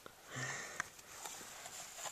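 An animal sniffing close to the microphone inside a hollow log, in a short burst about half a second in, then fainter scuffing.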